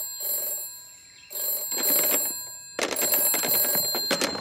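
A telephone ringing in repeated bursts, about three in a row, as a call waits to be answered.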